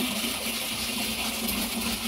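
Steady rush of running water, with a low steady hum beneath it.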